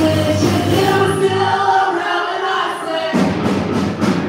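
A live band playing with several voices singing. Partway through, the bass and drums drop out, leaving the singing. The full band comes back in with a hit about three seconds in.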